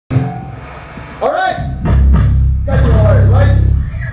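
Amplified electric bass and guitar holding low sustained notes on stage, loudest from about two seconds in to just before the end, with a man's voice talking over the PA in between.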